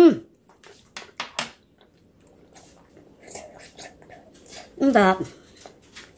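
A woman hums 'mm' in approval while eating, with a few short mouth clicks of chewing about a second in and a second drawn-out hum near the end.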